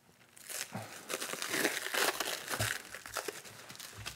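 Clear plastic wrap crinkling as hands pull and work it loose from a rolled leather hide, starting about half a second in and going on as a dense, irregular crackle.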